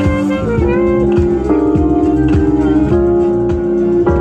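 Improvised saxophone and keyboard duo: held, wavering saxophone notes with sliding bends over sustained keyboard chords and a steady low beat.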